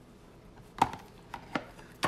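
Handling of eyelash packaging: a sharp knock a little under a second in, then two lighter clicks as the boxes are put down.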